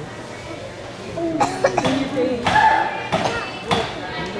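Indistinct voices chattering in a large gym hall, with several sharp knocks in the second half.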